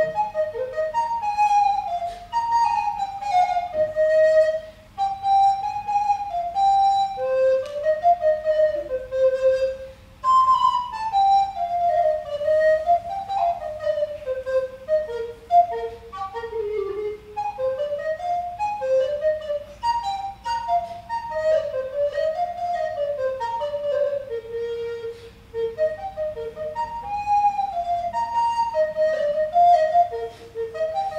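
Alto recorder playing a slow solo French Baroque air, a single melodic line moving by steps in the instrument's middle range, with short breath pauses about five and ten seconds in.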